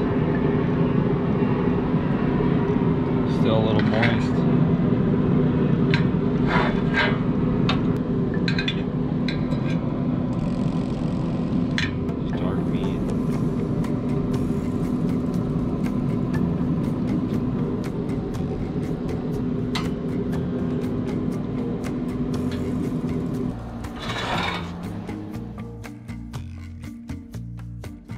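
Metal tongs clicking and tapping against a pellet grill's grate and a plate as smoked fish strips are lifted off, over a steady low hum. Music comes in near the end.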